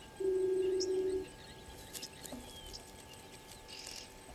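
Remote-controlled wildlife camera's pan-tilt motor whirring once for about a second as the view shifts, a steady hum, with faint bird chirps behind it.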